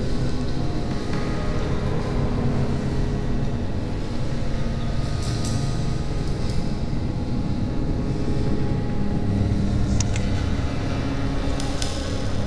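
A low, steady droning rumble with held tones over it, a dark ambient soundtrack bed, with a few faint clicks about ten seconds in.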